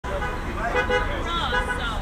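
Street ambience: a steady low rumble of traffic under the indistinct voices of several people talking.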